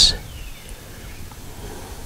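Clean motor oil trickling from a bottle into a new spin-on oil filter, faint over low background noise, with a few small handling ticks.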